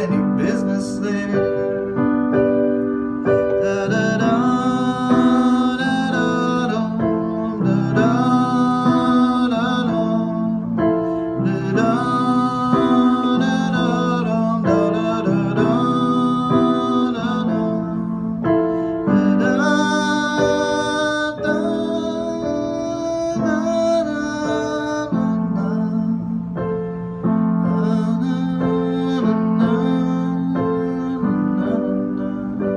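Digital keyboard in a piano voice playing a slow, gentle accompaniment of held chords that change every few seconds.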